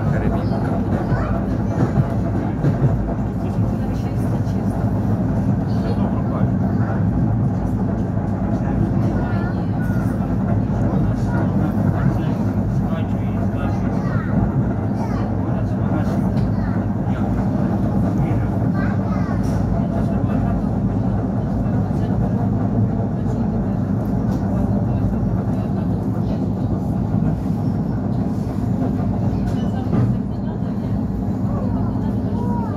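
Steady rumble of an ER9-series electric multiple unit running at speed, heard inside the carriage: wheels on the rails and the train's running gear, with a constant low hum.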